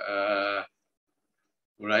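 A man's voice holding a drawn-out hesitation sound with a wavering pitch for about two-thirds of a second, then silence until he starts speaking near the end.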